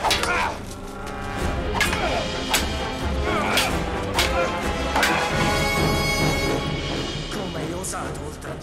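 Orchestral film score playing under a fight, cut through by several sharp hits and clashes from a sabre and a wooden pole striking.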